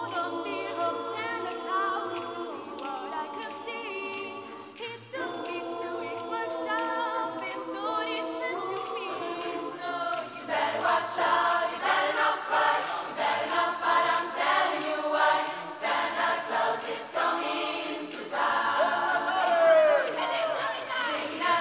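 Mixed youth choir singing a Christmas medley a cappella in close harmony. It opens with held chords and a brief pause about five seconds in, then turns louder and rhythmic about halfway through.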